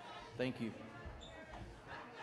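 A quiet pause in a live room, with a brief voice sound about half a second in and a few soft, low thumps.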